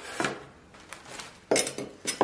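A plastic tray and a bundle of Chinese chives being moved about and set down on a wooden cutting board: a few knocks and rustles, the loudest about one and a half seconds in.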